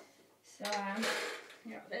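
A large cardboard box being moved and scraped about a second in, with a short vocal sound from the woman handling it just before.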